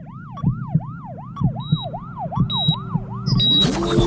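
Siren-like sound effect in a show's break jingle: a yelping pitch sweeps up and down about four times a second over a steady electronic beat, with short high beeps. Near the end a loud whoosh leads into music.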